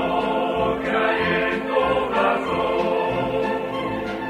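A choir singing a song in several voices, held notes moving from one chord to the next.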